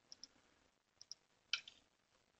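Faint computer mouse clicks: two quick pairs of clicks, then a louder single click about one and a half seconds in.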